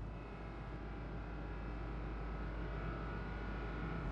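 Steady drone of offshore drilling rig machinery: a low hum with several faint, steady whining tones above it.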